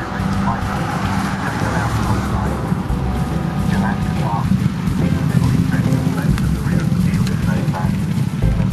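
A loud, busy racecourse din as a field of jump-racing horses gallops past: voices that sound like race commentary, over a dense low rumble, with background music in the mix. It grows louder about five seconds in, as the runners head toward the grandstand.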